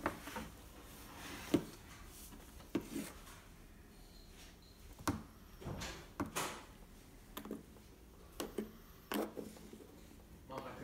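A dozen or so light, irregular clicks and knocks of plastic toys being handled: a toy dinosaur bumping a plastic toy garbage bin and small Lego pieces rattling in it on a wooden tabletop.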